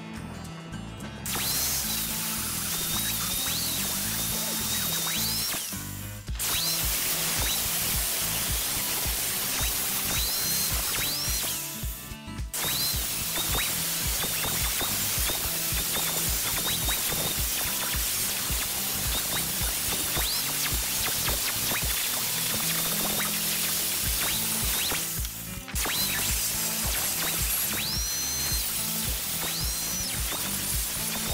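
Angle grinder grinding the corners off a steel lock body, starting about a second in, its high whine rising in pitch at times as the disc eases off the steel. It stops briefly three times, about six, twelve and twenty-five seconds in.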